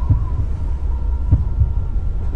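Dark ambient end-screen soundtrack: a steady low drone with a slow heartbeat effect, double thumps repeating about every second and a half.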